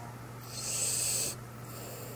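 Sleeping Boston terrier breathing noisily: one airy, hissing breath about half a second in, lasting nearly a second, over a faint steady hum.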